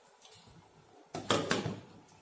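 A glass pot lid set down on a steel cooking pot, clattering for about half a second as it settles, starting a little over a second in.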